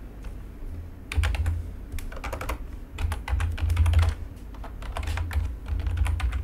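Typing on a computer keyboard: irregular runs of quick keystroke clicks, starting about a second in.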